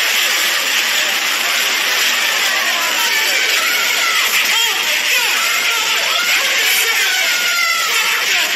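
Loud, continuous cartoon brawl sound effect: a dense jumble of scuffling noise with overlapping yelps and shouts, going on without a break.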